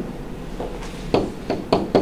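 A pen stylus tapping and knocking on a tablet's writing surface during handwriting: several separate sharp taps.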